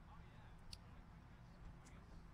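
Near silence: a faint low hum of room tone with two faint clicks about a second apart.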